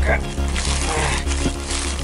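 Plastic bubble wrap crinkling and rustling as a package is worked open by hand, over background music.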